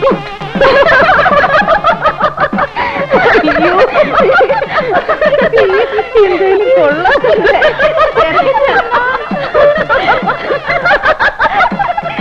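A crowd laughing and calling out all at once, many voices overlapping, with music beneath.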